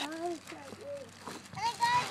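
A young child talking in a high voice.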